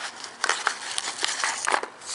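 Paper or plastic packaging crinkling and rustling, with small clicks and scrapes of a cardboard box insert, as a camera is taken out of its box. The crackles come irregularly throughout.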